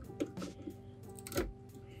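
Background music with a few sharp plastic clicks and knocks, the loudest about one and a half seconds in. A tall RAM module is being pressed toward its slot and knocking against the stock CPU cooler: it is too bulky to fit beside it.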